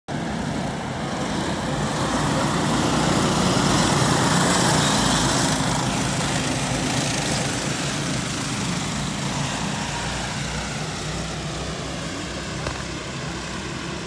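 A pack of racing go-karts' small engines buzzing as they pass close by. They are loudest about four seconds in, then fade as the karts pull away around the far turn.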